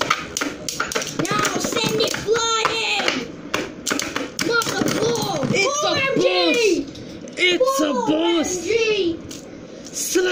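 A child's voice exclaiming over the battle, with sharp clicks and clacks of Beyblade spinning tops striking each other and the plastic stadium wall. The voice drops away briefly near the end.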